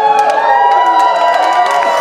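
Concert crowd cheering and whooping, with many voices sliding up and down, and a few scattered claps.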